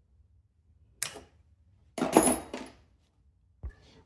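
Plastic wiring connectors and harness clips on a scooter engine being worked loose by hand: a sharp click about a second in, then a louder clatter of clicks lasting under a second.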